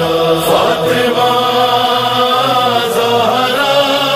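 Devotional vocal chant in long, held notes: a refrain on the names "Fatima" and "Zahra" sung as an introduction to a manqabat.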